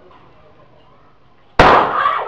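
A single loud gunshot, a police warning shot, about one and a half seconds in, cutting in suddenly over a low murmur of background voices and ringing on briefly.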